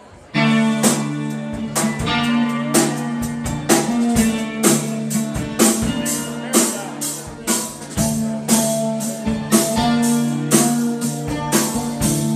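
Live rock band of electric guitars, bass guitar and drum kit starting a song about half a second in with a sudden full-band entry, then playing an instrumental intro on a steady beat with sustained guitar chords.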